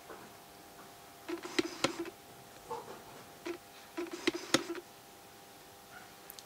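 Faint steady electrical hum, with several clusters of sharp clicks and light knocks in the middle seconds.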